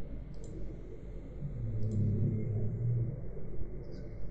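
Two faint computer mouse clicks, with a low hum lasting about a second and a half in the middle.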